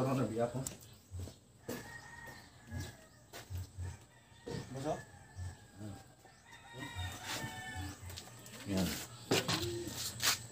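A rooster crowing twice, long drawn-out calls, over light clicks and knocks of hand work on the engine's belt and pulleys.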